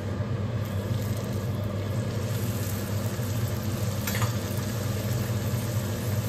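A puri frying in hot oil in a kadai, a faint sizzle that picks up under a second in, over a steady low mechanical hum. A single light clink about four seconds in.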